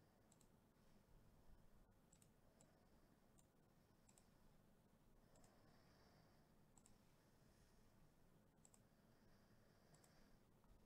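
Near silence broken by faint computer mouse clicks, scattered irregularly about once a second.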